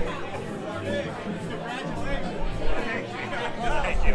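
Several people talking at once over background music: the mixed chatter of guests at a house party.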